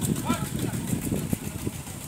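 Indistinct voices of people talking and calling, with a short call near the start, over a steady low rumble.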